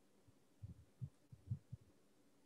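Near silence: room tone with a few faint, short low thumps.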